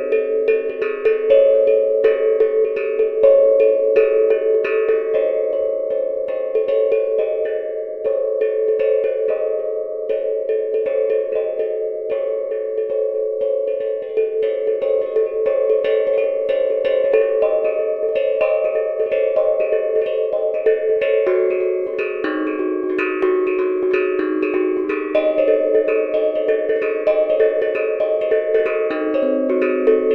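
Handmade steel tongue drum (tank drum) played in a fast, unbroken stream of struck notes that ring on and overlap, pitched in the range from middle C to about an octave above.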